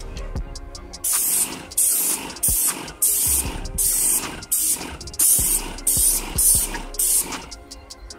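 Paint sprayer on a pole-mounted wand spraying exterior wall paint in short hissing bursts, about two a second, starting about a second in and stopping shortly before the end. Music plays underneath.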